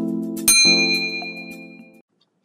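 Subscribe-animation sound effects: a click about half a second in sets off a bright bell-like ding that rings and fades over a held low synth chord. Both stop abruptly at the end.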